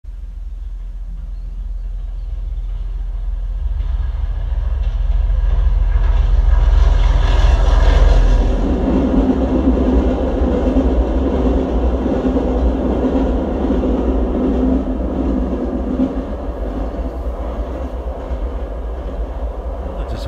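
British Rail Class 52 'Western' diesel-hydraulic locomotive with its train. A deep rumble builds over the first eight seconds to its loudest, then settles into a steady engine note that runs on.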